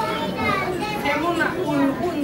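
Several voices talking over one another, children's voices among them, with no clear words.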